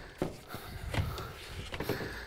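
A few light knocks and scuffs of a wooden door jamb being pressed into place against the framed rough opening.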